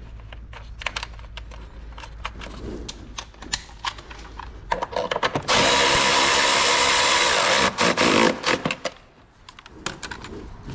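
A cordless power tool spins a bolt through a long socket extension. It runs at a steady pitch for about three seconds from around halfway, then stops. Before it come light clicks and clatter of hand tools on metal and plastic.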